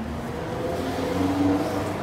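A motor vehicle's engine humming as it passes in city traffic, swelling to its loudest about one and a half seconds in and then easing off.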